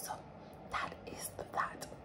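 A woman's soft whispered, breathy sounds: a few short unvoiced puffs rather than voiced words.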